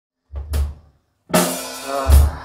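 Live band's drum kit: a kick drum and cymbal hit, a short gap, then about a second in a louder crash with cymbals and ringing pitched notes.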